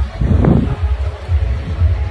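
Wind buffeting a phone's microphone in uneven low gusts, with one brief louder sound about half a second in.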